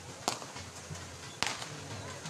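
Two sharp whip cracks, about a second apart and the second louder, as a pair of racing bulls pulling a sled is driven on.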